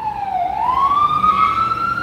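Emergency vehicle siren in a slow wail: its pitch dips to a low point about half a second in, then climbs slowly and steadily.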